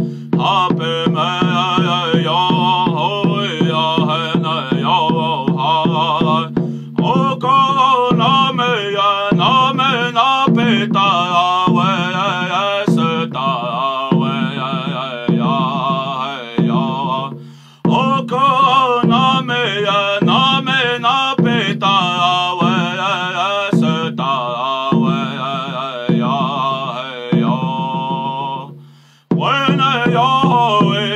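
A man singing a chant-like song in a strong, sustained voice, accompanied by a steady beat on a painted hand drum struck with a beater. The singing breaks off briefly for breath a few times.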